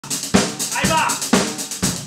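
Drum kit played with sticks: a steady beat with strong hits about twice a second under a continuous wash of cymbals.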